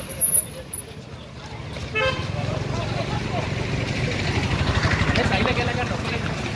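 Street noise with people's voices as a group walks along a road, with a short vehicle horn toot about two seconds in. There is a brief loud burst of noise at the very start.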